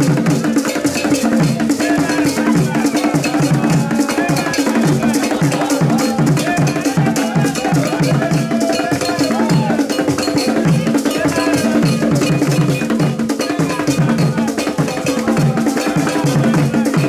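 Ghanaian traditional drum ensemble of hand drums and large standing drums playing a fast, steady dance rhythm, with a metal bell ringing a repeating pattern over the drums.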